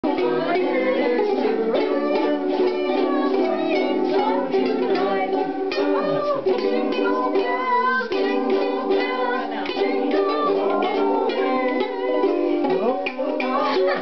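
A group of about eight ukuleles strummed together in a steady rhythm, played by beginners on brand-new instruments.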